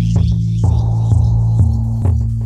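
Electronic music: a loud, deep synth bass drone that steps between a few low notes, with sparse clicky percussion over it.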